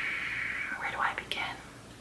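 A woman's long breathy sigh fading out, followed about a second in by soft breathy mouth sounds and a small lip click.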